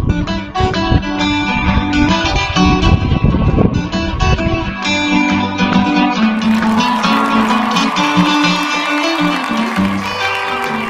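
Solo steel-string acoustic guitar played fingerstyle, picking a folk melody over bass notes. The bass thins out after about five seconds while the melody goes on.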